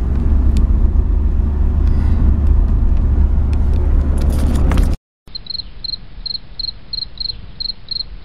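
Road and engine noise inside a moving pickup truck's cab, a loud steady low rumble with a few handling clicks. After a sudden cut about five seconds in, a faint high chirp repeats about three times a second.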